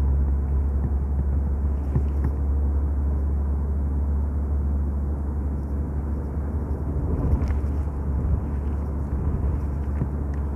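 A car travelling at speed, heard from inside: a steady low rumble of road and tyre noise, with a short louder bump about seven seconds in.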